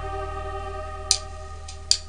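Electronic keyboard holding a sustained chord over a low bass note, with two short sharp clicks, one about a second in and one near the end.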